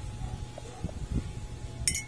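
Dishware being handled: soft knocks through the middle, then one sharp ceramic clink near the end.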